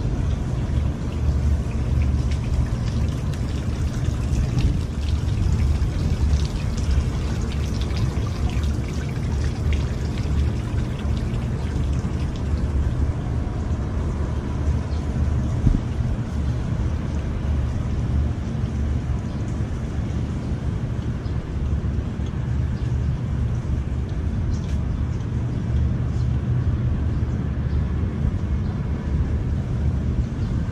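Steady rushing and splashing of water from a tiered garden fountain, over a heavy, wavering low rumble.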